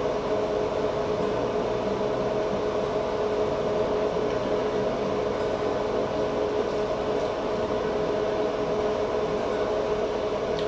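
A steady machine hum: two steady tones over a low rumble, unchanging throughout.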